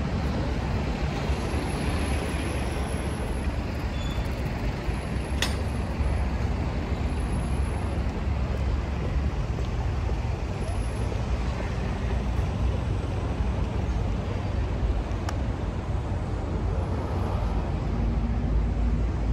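Steady city traffic noise, a low even rumble of road vehicles, with one brief click about five seconds in.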